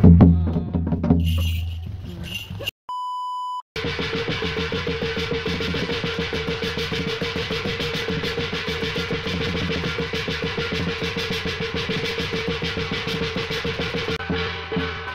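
A loud low sound fades over the first two seconds, and a short electronic beep tone follows about three seconds in. After it comes fast, steady, even beating on a small hand-held Korean shaman's gong, played sped up, its ringing tone held throughout.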